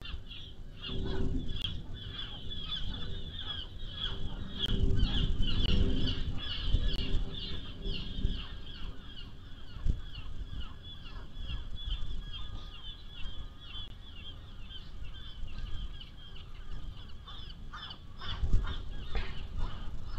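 A flock of birds calling: many short, high-pitched calls overlapping in a continuous chatter, busiest in the first half and thinning later. Bursts of low rumble come in about a second in, again a few seconds later, and near the end.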